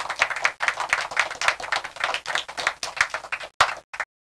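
Fast, uneven hand clapping that stops about three and a half seconds in, followed by two last single claps.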